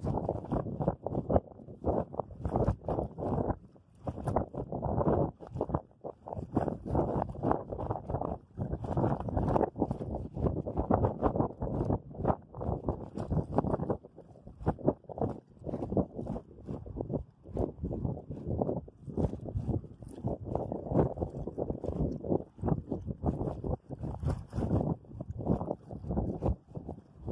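Rough, uneven outdoor noise of wind on the microphone and moving river water, rising and falling irregularly with no clear pitch.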